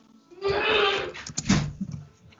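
A person's breathy, wordless vocal sound lasting about half a second, followed by a second, shorter one about a second and a half in.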